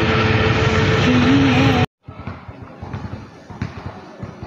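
Loud road and wind noise of a ride in an open, canopied rickshaw, with a steady tone running under it. It cuts off abruptly about two seconds in, and quieter outdoor sound with scattered light knocks follows.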